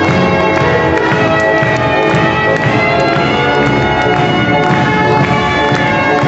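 Loud, continuous instrumental music with many notes held at once and no pauses.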